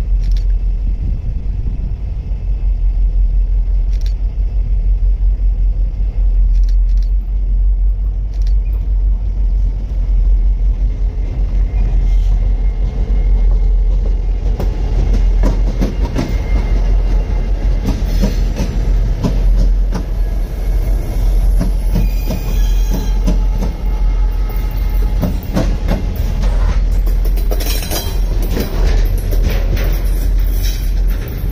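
Freight train rolling past: a steady low rumble of rail cars, with wheel clicks and clatter over the rail joints growing denser about halfway through. Brief high squeals come near the end.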